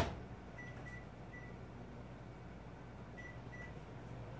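Quiet room tone with a steady low hum, opening on the tail of a knock. Faint short high beeps come three times about half a second to a second and a half in, and twice more near the end.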